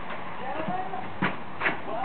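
Two short, sharp knocks close together in the second half, from parts of a juice press being handled and fitted together.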